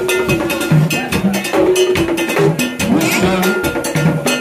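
Haitian vodou drumming: rapid hand drumming on tall barrel drums with a bright metal bell struck over the beat, and voices singing held, wavering lines over the rhythm.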